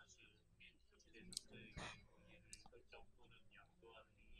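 Faint, distant murmur of a class reading a law text aloud together, heard only as a low background of voices. A few sharp clicks stand out, the loudest about two seconds in.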